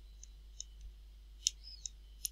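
Faint, irregular clicks of a stylus tapping and stroking on a pen tablet while handwriting, a handful of light ticks with the sharpest about one and a half seconds in.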